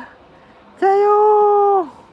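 A woman's voice holding one long, steady high note for about a second, starting just under a second in.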